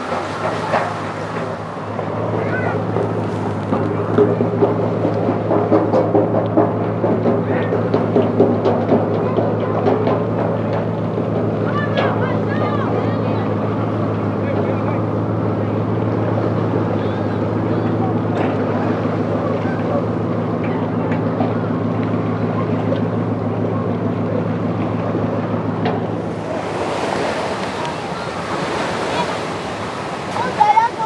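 An engine idling steadily, a low hum with even tones, with people's voices murmuring over it. The hum stops about 26 seconds in, leaving a noisy wash of wind and waves at the ramp.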